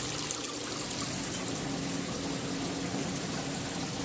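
Steady rushing and trickling of water in an open-top saltwater aquarium, its surface churned by the circulation flow, with a faint low hum under it.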